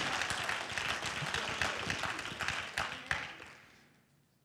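Congregation applauding, a dense patter of many hands clapping that thins out and dies away about three and a half seconds in.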